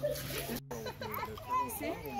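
Young children's voices chattering and calling out, with no clear words. The sound drops out for an instant just over half a second in.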